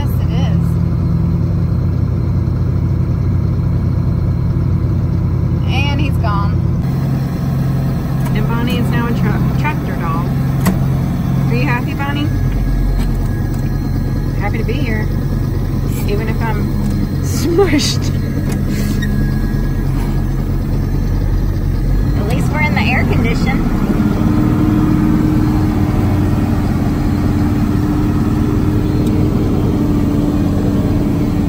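Tractor engine running steadily under load while pulling a forage harvester chopping corn for silage. After about seven seconds the sound comes from inside the tractor cab, and the engine's tone shifts again near the end. Short voice-like sounds come and go in the middle.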